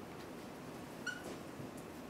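A dry-erase marker writing on a whiteboard, squeaking once briefly and high-pitched about halfway through, with faint scratchy strokes over quiet room hiss.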